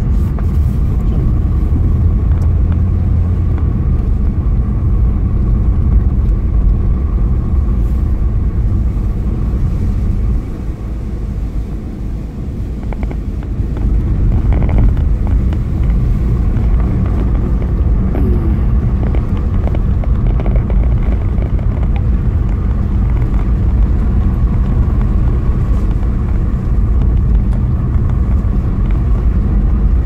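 Steady low rumble of a car's engine and tyres, heard from inside the cabin while driving. It drops for a few seconds around the middle, then picks up again.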